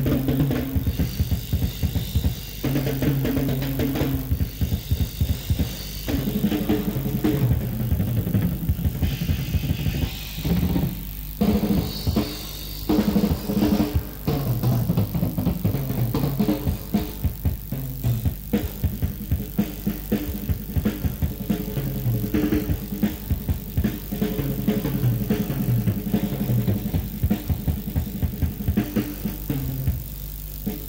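Live rock drum kit solo: fast strokes on snare, toms and bass drum, broken by a few short pauses. The drumming stops right at the end.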